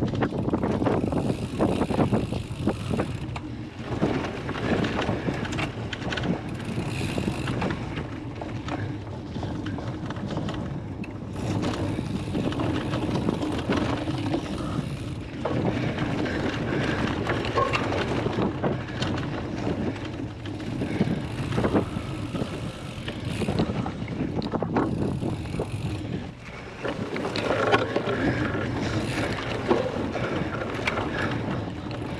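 A cyclocross bike ridden hard over bumpy grass, heard from a camera on its handlebars: a steady rush of wind on the microphone and knobby tyres on turf, with frequent clicks and rattles from the bike over the bumps.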